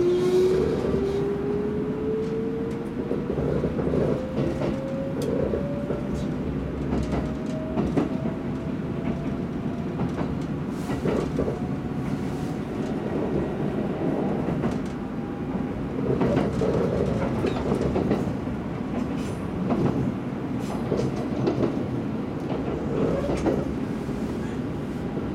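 Kintetsu limited express electric train running on the rails, with a steady rumble. A motor whine rises steadily in pitch over the first several seconds as the train gathers speed, then fades. Clacks from rail joints come at uneven intervals.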